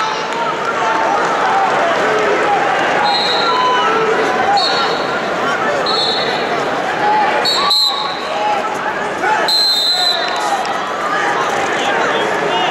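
Arena crowd of spectators, many voices talking and shouting over one another. Short whistle blasts from referees on the wrestling mats cut through about five times. There is one sharp knock around two-thirds of the way through.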